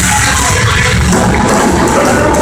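Heavy metal band playing live at full volume, with distorted electric guitars, bass and drums in a dense, continuous wall of sound.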